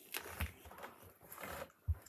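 Someone biting into and chewing a crisp apple, giving two noisy crunching stretches, with a short dull thump just before the end.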